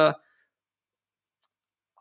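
The last word of a man's spoken phrase, then near silence with one faint, short click about one and a half seconds in.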